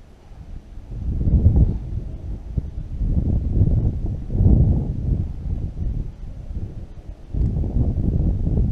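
Wind buffeting the microphone in irregular low rumbling gusts.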